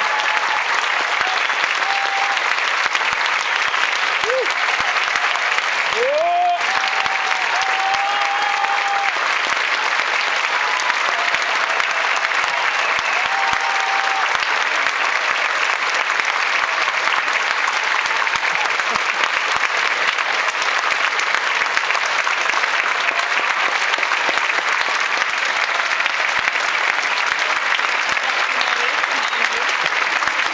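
Large audience applauding steadily and loudly throughout, with a few voices calling out over it in the first half.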